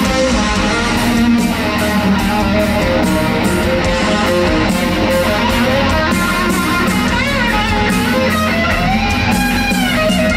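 Live hard rock band playing an instrumental passage: a lead electric guitar over drums and bass, with the guitar bending and shaking its notes near the end.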